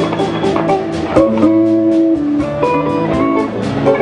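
A live electric blues band playing: electric guitars over a drum kit keeping a steady beat, with long held, bending notes.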